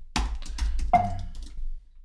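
Computer keyboard keys clicking in a quick run of keystrokes as a short editor command is typed.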